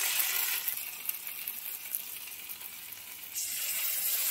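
Sliced bitter gourd and potato frying in hot oil in a wok, sizzling steadily. The sizzle grows louder near the end as more coconut-poppy seed paste is poured into the hot pan.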